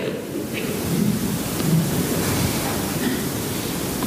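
Steady hiss of room noise in a large hall, brought up by the recording's gain during a pause in the talk, with faint low indistinct sounds under it.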